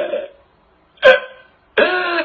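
A man crying out loud: a last gasping sob at the start, a short pause, a sharp loud cry about a second in, then a drawn-out wailing cry starting near the end.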